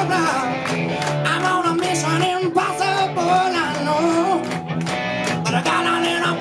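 Live blues-rock band playing electric guitars, bass and drums, with a lead singer's voice over them.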